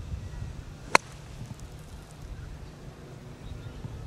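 A golf club strikes the bunker sand once, about a second in, a single sharp hit: an explosion shot, the club taking a deep cut of sand so that the sand forces a buried ball out.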